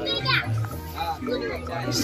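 Voices, among them a child's, talking over music with a low bass line.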